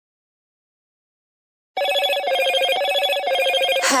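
Silence, then about two seconds in an electronic phone ringtone starts: short warbling trill bursts repeating about twice a second.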